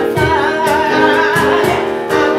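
Live band music: a woman singing a sustained line with vibrato over keyboard chords and hand drums.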